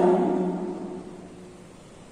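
A man's voice held as a low, steady hum that fades out over about a second and a half, leaving faint room noise.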